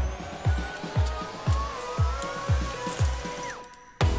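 Electronic dance music with a steady kick drum about twice a second and a rising pitch sweep building up, which cuts out briefly near the end.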